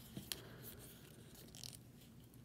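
A few faint clicks of a plastic 6-inch action figure's shoulder joint as the arm is rotated by hand.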